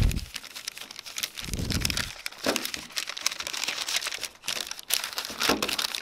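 Paper packing being unfolded and crumpled by hand, a continuous irregular crinkling with many small crackles.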